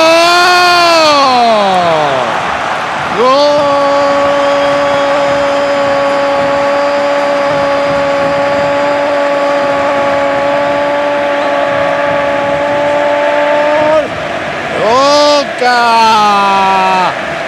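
Football TV commentator's goal cry: a rising-and-falling shout, then a single long held 'gol' of about eleven seconds, then more short shouts near the end, over steady stadium crowd noise.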